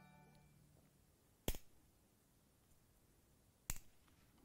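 A notification chime's ringing tail fades out in the first half second. Then two sharp clicks come about two seconds apart as cables are fastened behind a PC case's motherboard tray.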